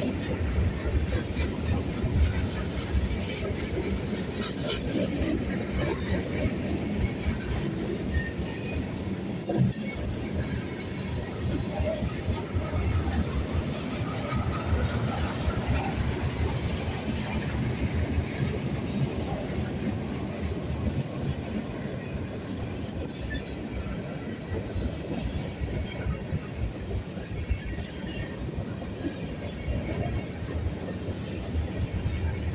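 Freight cars of a Buffalo & Pittsburgh train rolling past close by: a steady rumble and clatter of wheels on the rails. Brief high wheel squeals come about 9 seconds in and again near the end, and a single sharp clank sounds just before 10 seconds.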